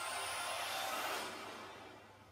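Film trailer soundtrack played from a tablet's speaker: a swell of noise with a thin high whistle climbing in the first second, dying away toward the end.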